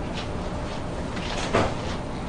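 Steady room noise with a few faint clicks, and one louder thump about one and a half seconds in.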